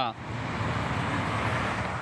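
Steady traffic noise from cars on a city street.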